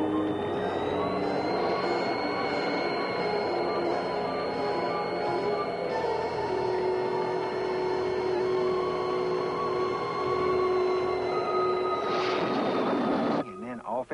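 Suspenseful background music under a steady high electronic whine used as the flying saucer's sound effect. The whine rises slightly about a second in, and the whole sound cuts off suddenly near the end.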